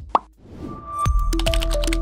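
A short sound effect gliding up in pitch just after the start, then the broadcaster's outro music comes in about a second later: a melody of held notes over a deep bass.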